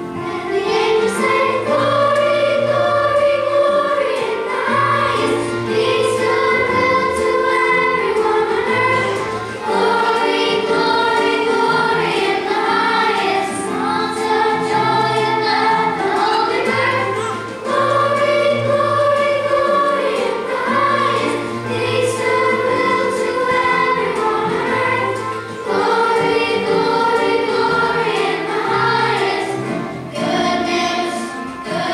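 Children's choir singing a song with accompaniment, in phrases of about eight seconds with short breaks between them.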